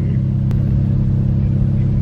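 Car engine idling, heard from inside the cabin as a steady low hum, with a faint tick about half a second in.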